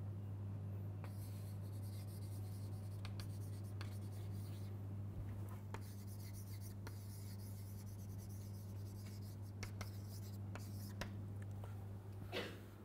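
Chalk writing on a blackboard: scratchy strokes and scattered taps of the chalk against the board, over a steady low hum.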